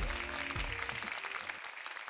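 Studio audience applauding over the last notes of a song, whose bass and melody die away about a second in, leaving the applause alone.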